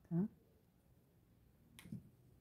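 A single short, sharp click near the end, a small object being handled or set down on the work surface.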